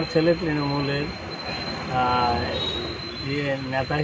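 A man speaking in short phrases, with a steady high-pitched whine behind his voice.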